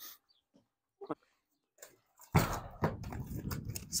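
Horse backing off a horse trailer's ramp: after two quiet seconds, a run of hoof knocks and scuffing noise on the ramp and gravel begins.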